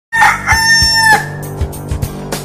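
Opening of a TV show intro jingle: one loud, long pitched call, about a second long, that drops in pitch at its end, over music with a few drum hits.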